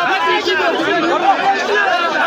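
A crowd of onlookers close by, many voices talking and calling out over one another without a pause.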